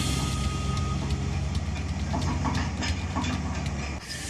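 Tracked excavator's diesel engine running steadily at a low drone, with a few scattered clanks over it.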